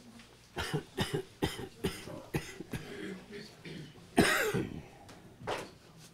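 A person coughing: a run of short coughs, then one louder, longer cough about four seconds in and a last one near the end.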